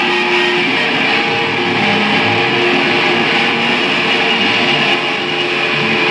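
Electric guitars played through effects pedals, making a loud, steady wall of distorted noise with held droning tones running through it.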